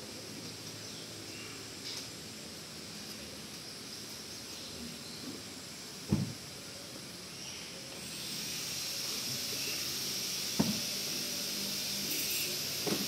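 Steady background hiss that grows louder about eight seconds in, with two short dull knocks about six and ten and a half seconds in.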